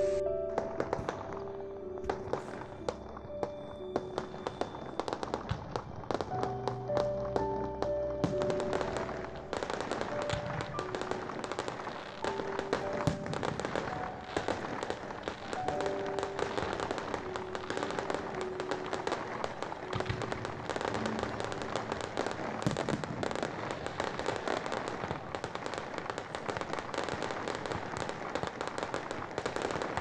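Background music with held notes, then from about ten seconds in a dense, continuous crackling of fireworks, many small pops close together, which takes over as the music fades out.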